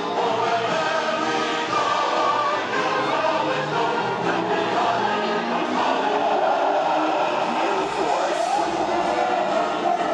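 Recorded music with choral singing, played over loudspeakers mounted on a parade truck, continuous and steady in level.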